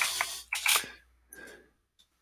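Computer keyboard and mouse clicks with short rustling noises, clustered in the first second and a half.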